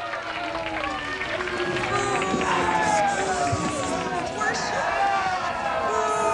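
Many voices cheering and shouting over one another, with applause, just after a song-and-dance number ends.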